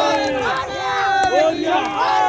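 A group of people shouting together, many voices overlapping.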